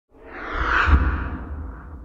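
Whoosh sound effect of an animated logo intro, with a deep rumble underneath, swelling to its loudest about a second in and then fading away.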